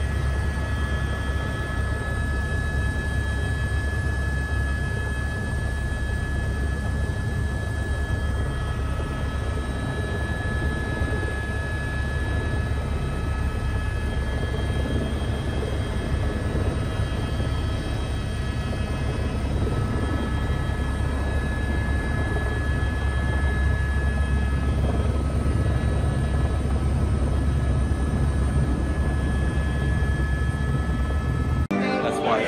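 Helicopter heard from inside the cabin while landing and settling on the pad: a steady deep rotor and engine drone with a steady high turbine whine over it.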